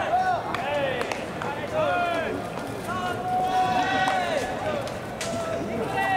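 Baseball players' shouted calls during infield fielding practice: many overlapping, drawn-out yells. A few sharp knocks are heard, the clearest about five seconds in, as a fungo bat hits a ground ball.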